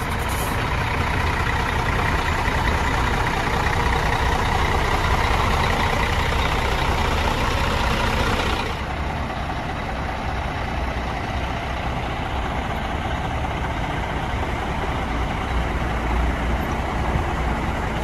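Diesel intercity coach engines idling close by, a steady low rumble; the brighter part of the noise falls away about nine seconds in.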